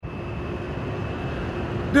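Steady hum of city street traffic, with a faint thin whine running through it.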